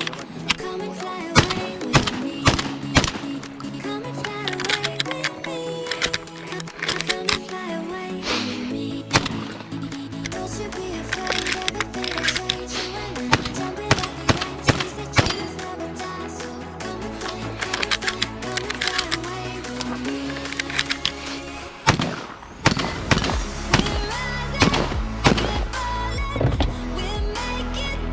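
A song with a steady beat plays over repeated shotgun shots. The shots come at irregular intervals, often a few a second in quick strings.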